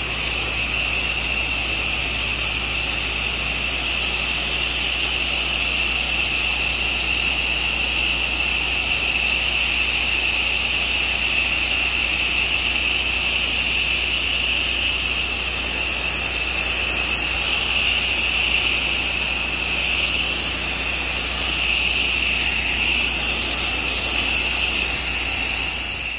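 High-pressure water jet from a pressure washer wand blasting a concrete pad, a steady hiss with a sharp high edge over the low, even hum of the pressure washer's engine.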